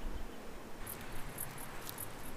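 Faint outdoor ambience with a few short, very high-pitched insect chirps in the second half.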